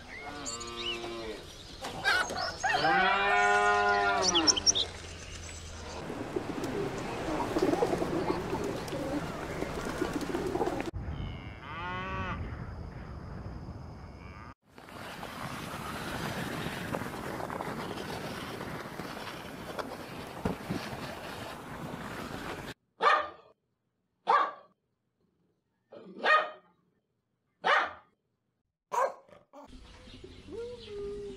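Cattle mooing, several long calls that rise and fall in pitch in the first few seconds, followed by stretches of steady noise from other clips and, near the end, five short separate sounds cut off by silence between them.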